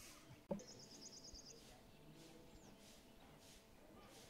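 Faint outdoor background with a bird giving a quick, high trill of about ten rapid chirps lasting about a second, just after a brief knock about half a second in.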